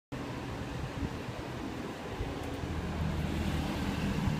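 A car engine idling steadily, with a few soft handling knocks.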